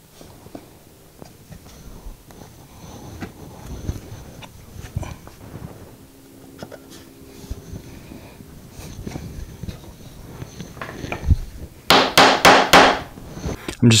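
Plywood cajon panels being handled and fitted together on a wooden workbench during glue-up, with scattered light knocks and clicks, then a quick run of about four loud sharp wooden knocks near the end.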